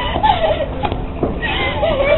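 A girl's high-pitched laughter, wavering up and down in pitch.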